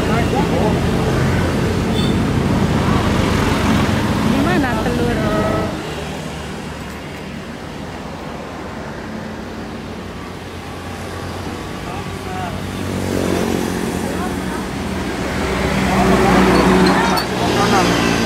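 Road traffic with motor vehicles running and passing, and people's voices mixed in. A loud engine rumble in the first six seconds drops away suddenly, and the traffic noise and voices build again toward the end.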